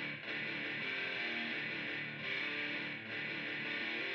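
Electric guitar playing slow held notes and chords through an amp, changing pitch about once or twice a second, with no drums.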